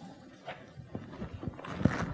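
Sheets of paper being handled and folded close to a clip-on lapel microphone: irregular low thumps and rustles, getting busier, with the loudest thump near the end.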